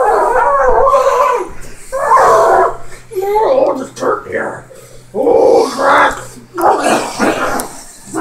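A man's loud wordless vocal noises in about five short bursts, each with sliding pitch.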